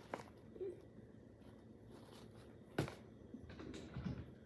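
Quiet handling of a cardboard tea box on a kitchen counter: a few light clicks and taps, and one sharp knock a little before three seconds in.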